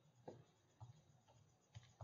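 Near silence with a few faint, short clicks about half a second apart.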